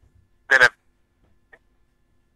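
A man speaks one short word about half a second in, between pauses in his talk; otherwise near silence.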